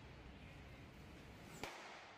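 Faint room noise, with one sharp snap about one and a half seconds in.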